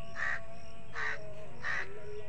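A crow cawing three times, short harsh calls spaced well under a second apart.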